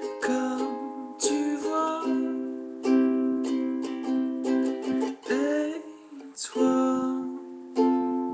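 Kala ukulele strumming chords in a brisk rhythm, an instrumental passage with no singing.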